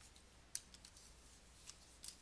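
Near silence with one faint sharp click about half a second in and a couple of softer ticks after it: a stylus tapping on a drawing tablet.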